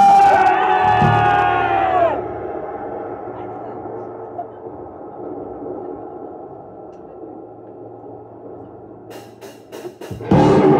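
Live metal band between songs: a loud held note dies away about two seconds in, leaving low amplifier hum and a quiet crowd murmur. Near the end come four sharp clicks, a drummer's stick count-in, just before the band starts the next song.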